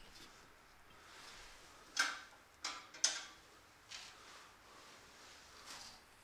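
A few sharp, light metallic clicks and knocks from a rear brake caliper being handled and seated over new brake pads on its carrier: about four clicks, starting about two seconds in.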